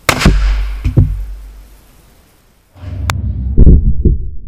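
.500 S&W Magnum revolver shot striking a pumpkin right at the microphone: a single very loud, sharp crack as the hollow-point bullet bursts the pumpkin, followed by a smaller thud just under a second later. Near the end come deep, muffled booms and thuds with no high end.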